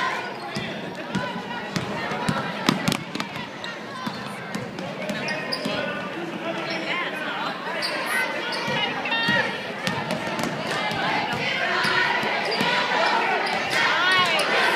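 A basketball bouncing on a hardwood gym floor, with a cluster of sharp bounces about two to three seconds in, under steady talking and calling out from people in the gym.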